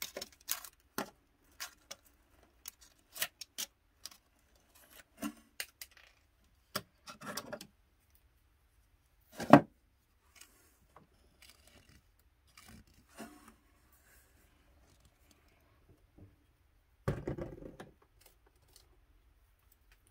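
Scattered small clicks, taps and scrapes of hand work inside a dollhouse room as old wallpaper is picked back and a tube of super glue is handled, with one louder knock about halfway through and a brief patch of rustling near the end.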